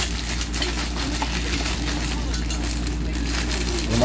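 Crinkling and crackling of a small plastic packet of screws being handled, over a steady low hum.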